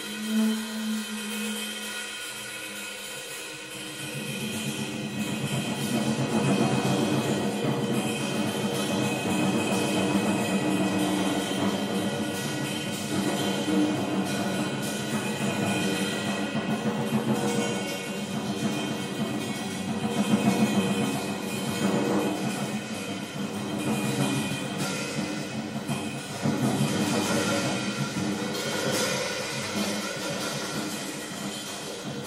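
Drum kit played in a dense free-improvised flurry of fast stick strokes on snare and toms, with ringing overtones over it. It starts quieter and fills out about four seconds in.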